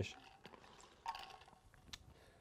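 Faint handling sounds of a stainless steel tumbler being drunk from: a few small ticks, a short sip about a second in, and a sharp click near the end.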